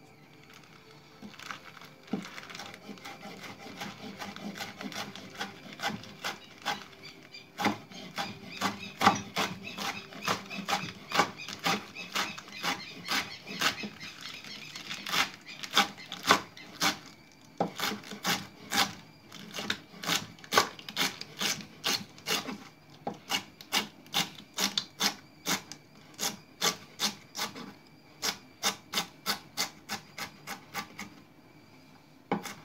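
Kitchen knife slicing a bundle of Swiss chard leaves on a wooden cutting board: a long run of short cuts, each ending in a knock on the board, settling into a steady rhythm of about two to three strokes a second from the middle on.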